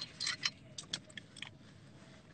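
Several short, sharp clicks and light rattles, close to the microphone, spread over about a second and a half.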